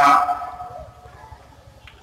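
A man's chanted Arabic recitation, its last held note fading out about a quarter second in, followed by a pause with only faint background sound and a soft click near the end.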